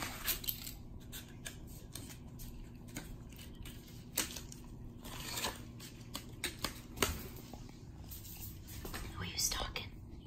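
Kittens batting and clawing at a flat cardboard packing insert on a wooden floor: irregular scratches, scrapes and taps of claws on cardboard, with a few sharper ones.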